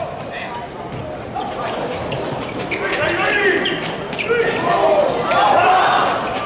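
Volleyball rally in a large indoor hall: several sharp smacks of the ball being hit, with players shouting calls to each other.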